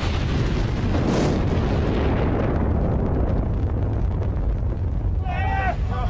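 An explosion: a sudden blast followed by a long, deep rumble, with a sharper crack about a second in. A man shouts near the end.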